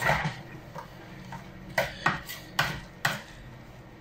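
A metal spoon folding beaten egg whites into a thick bread batter in a mixing bowl, scraping and knocking against the bowl's side. There are several sharp knocks, one at the start and a cluster of four in the second half, over soft scraping.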